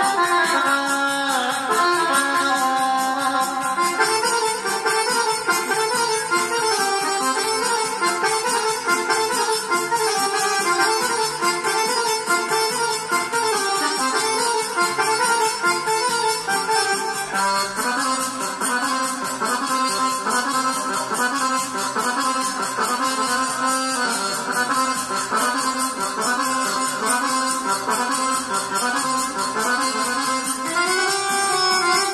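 Serbian kolo folk dance music with an accordion-like lead melody over a steady beat, played on an electronic keyboard.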